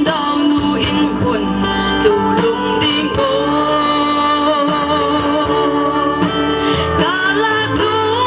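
A woman singing solo through a microphone over steady instrumental backing, holding long notes.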